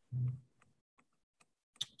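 A brief spoken sound just after the start, then a quiet meeting room with a few faint, scattered clicks.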